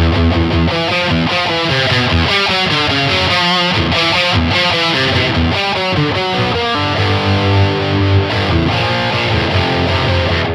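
Distorted electric guitar with EMG 81/60 active pickups, played through a Mesa Boogie Dual Rectifier Tremoverb head in modern high-gain mode into a Vintage 30 speaker cabinet. It plays heavy low notes at first, then quick note runs, with longer held notes near the end.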